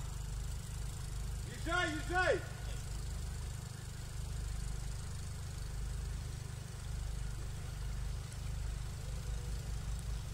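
An off-road jeep's engine running low and steady, with a brief shout about two seconds in.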